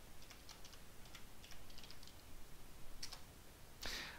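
Faint computer keyboard keystrokes: a short run of single key clicks as a command is typed, with one slightly stronger click about three seconds in.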